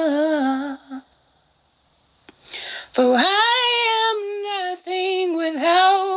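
A woman singing unaccompanied, in the slow melismatic style of a praise song. A held note wavers down and fades out about a second in. After a short silence a new sustained phrase begins about three seconds in and carries on with small bends in pitch.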